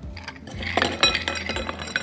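Ice cubes tipped from a cut-glass tumbler into a stemmed balloon glass, clinking against the glass and each other in a quick run of clinks that starts a little under a second in.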